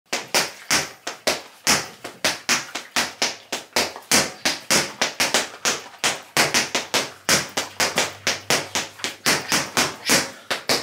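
Boxing-gloved punches landing on a hanging teardrop punching bag in a fast, even rhythm of about three to four hits a second, each a sharp thud.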